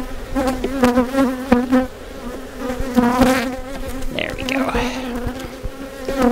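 Honey bees buzzing around an open hive: a steady hum whose pitch wavers as bees fly close past, with a few short knocks mixed in.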